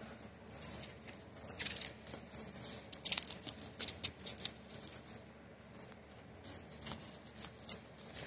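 Paper coin wrapper being torn and peeled off a roll of dimes, the dimes clinking against each other as they slide out, in an irregular run of bright clicks and crinkles.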